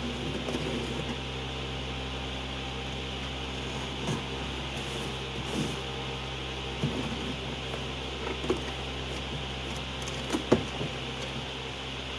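A cardboard shipping box being cut open with a utility knife and handled: scattered short scrapes, rustles and knocks of cardboard and paper, the sharpest knock about ten and a half seconds in. A steady low hum runs underneath.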